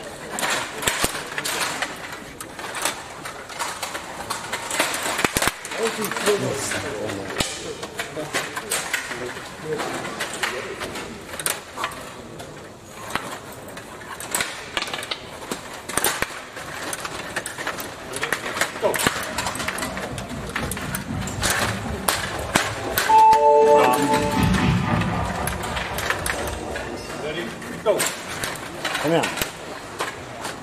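Table hockey in play on a Stiga Play Off 21 table: a steady run of sharp clicks and knocks from the rods, the plastic players and the puck. A brief ringing tone sounds about three-quarters of the way through.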